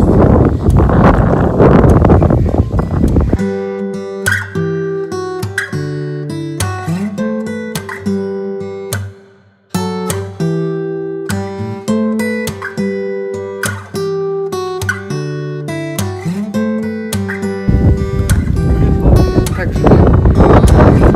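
Wind buffeting a phone microphone for the first few seconds, then acoustic guitar music with plucked notes, breaking off briefly about halfway. The wind noise returns near the end.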